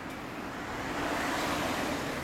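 Honda CB1300 Super Four's inline-four engine idling through an LCI aftermarket exhaust, getting slightly louder about a second in.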